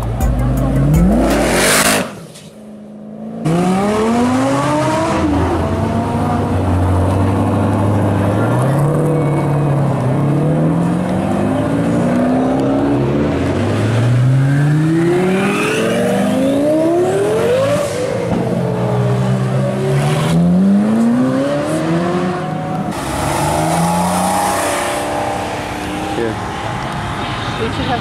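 High-performance car engines revving and accelerating away one after another, the pitch climbing and dropping again and again with the gear changes, after a brief lull about two seconds in. Spectators talk underneath.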